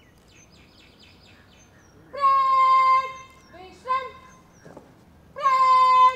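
Shouted drill words of command, drawn out: a long held call about two seconds in and another near the end, each dropping off sharply at its close, with two short barked calls between.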